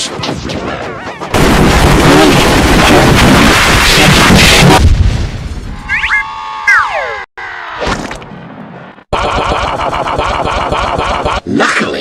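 A loud splash-and-crash sound effect lasting about three and a half seconds, followed by falling whistle-like glides and then a steady buzzing tone, all distorted by a G Major pitch-shift effect.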